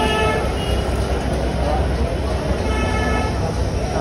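Busy street traffic noise with a vehicle horn tooting briefly at the start and again about three seconds in.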